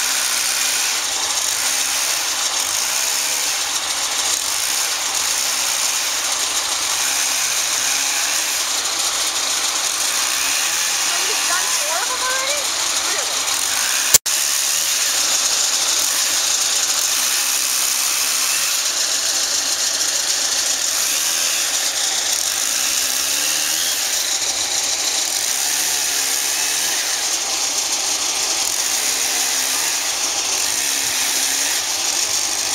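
An engine running steadily, with one sharp click about halfway through.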